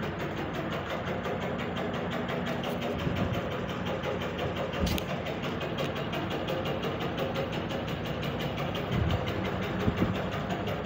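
Sony ceiling fan running at full speed with bent blades, a steady mechanical whir with a fast, even pulse. The fan is wobbling dangerously because one blade is bent up and one down, throwing the rotor out of balance. A sharp click sounds about halfway through.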